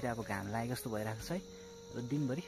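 A man talking for the first second or so, then pausing, over a steady high-pitched chirring of insects such as crickets.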